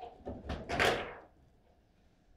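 Table football table in play: wooden-sounding knocks from the rods and ball, with a louder clatter just before one second in, after which it goes quiet.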